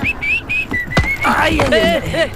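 A man whistling: three short rising notes, then one longer held note. It gives way to a raised voice about halfway through.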